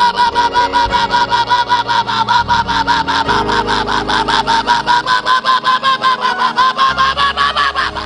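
High-pitched ululation: a rapid warbling vocal trill of about six pulses a second, held as one long stretch that climbs slightly in pitch near the end and then cuts off abruptly.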